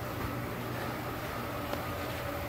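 Steady low hum with a hiss, with one faint tick near the end.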